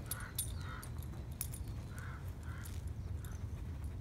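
A puppy sniffing at a carpet mat on concrete in about seven short bursts, with scattered light clicks, over a steady low rumble.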